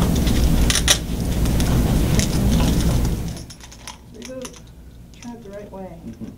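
Sharp plastic clicks and handling sounds as a leg prosthesis with strap buckles is fitted onto a donkey's leg, over a loud low rumble that stops abruptly about three seconds in. Faint voices follow.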